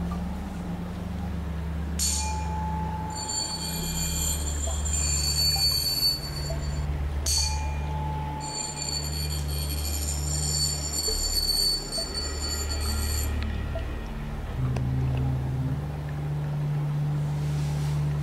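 Soft background music with a low, slowly shifting drone. Over it, a metal tuning fork is struck twice, about two seconds in and again about seven seconds in, and each time rings with high, bright tones. The second ring is damped suddenly about six seconds later.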